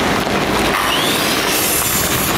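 A car driving slowly past close by, a steady noise of engine and tyres.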